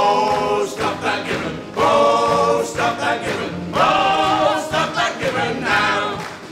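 A small mixed group of men's and women's voices singing together in harmony, in a few long held phrases with vibrato.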